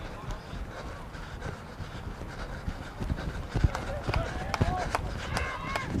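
Footfalls of a rugby league referee running with play, picked up on the microphone he wears: irregular low thuds with rustling, and faint player calls from about four and a half seconds in.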